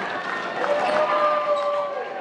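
Crowd in a basketball arena: voices calling out over general chatter, one held as a long note through the middle. Light knocks sound throughout, echoing in the big hall.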